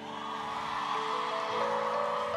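Live band playing soft, sustained chords that change a few times, over a low wash of crowd noise.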